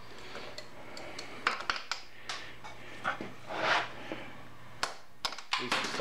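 Hand tools working at the bolts of a BMW K-series motorcycle's rear drive: scattered light metallic clicks and a few short scrapes, over a low steady hum.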